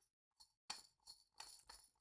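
Several faint metallic clicks as an etched metal handle sleeve slides onto a lightsaber chassis.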